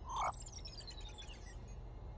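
Electronic sound effects of a virtual coin toss on a touchscreen tablet: a short falling blip just after the start, then a quick run of tinkly notes stepping down in pitch over about a second.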